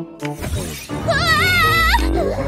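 A cartoon sound effect: a sudden crash-like burst with falling tones about half a second in. From about a second in, a cartoon character gives a high-pitched, distressed whining cry over background music.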